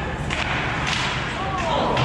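Ice hockey play: about three sharp cracks of hockey sticks and puck, with a shouting voice near the end.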